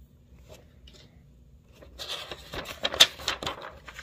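A large paperback picture-book page being turned by hand: a rustling, crackling sweep of paper about halfway through, after a quiet start.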